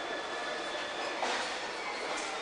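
Steady noisy ambience of a railway station concourse, with a brief louder swish a little over a second in.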